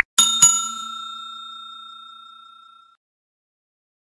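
Subscribe-button sound effect: a click, then a bell struck twice in quick succession, ringing with a clear tone that fades away over about three seconds.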